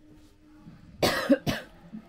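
A man coughs twice in quick succession about a second in: one longer cough, then a short second one.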